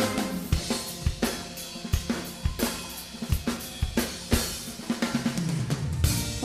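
A live funk band's drum kit plays a steady groove of kick, snare, hi-hat and cymbals at about two beats a second. Bass runs underneath and slides in pitch near the end.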